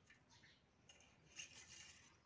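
Near silence, with faint rustling and a few light clicks from a wooden hand loom weaving silk being handled, mostly in the second half.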